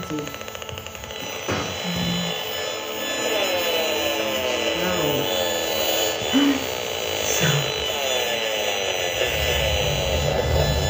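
Hand-held HF radiation meter's loudspeaker giving a steady electronic rasping buzz, the audio rendering of the pulsed mobile-phone mast signal it is measuring. Sparse, slow low music notes play underneath.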